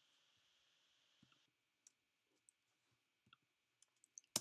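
Near silence with a few faint, scattered computer keyboard keystrokes as a short command is typed.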